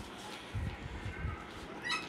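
Small puppies whimpering faintly while an older dog noses and pesters them, over a low rumble.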